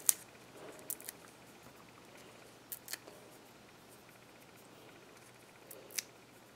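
Faint scattered paper clicks and ticks, about half a dozen, as small foam adhesive dimensionals are peeled from their backing and pressed onto a paper sentiment strip. The sharpest click comes right at the start.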